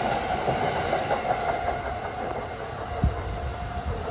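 JR East E231-0 series commuter electric train pulling out of the station, its last cars rolling past with a steady running tone and a few sharp clacks from the wheels. The sound slowly fades, the tone dying away near the end as the tail of the train clears the platform.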